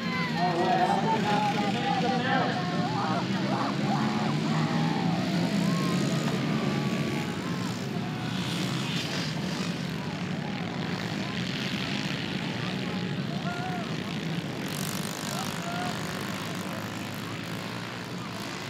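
A pack of 110cc youth dirt bikes racing together, several small engines revving and buzzing at once, loudest at first and easing slightly as the pack spreads out.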